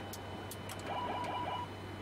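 Steady hum of the Boeing 747-400F flight deck with several sharp clicks of overhead-panel switches being flipped. A short pulsing tone sounds about a second in and lasts under a second.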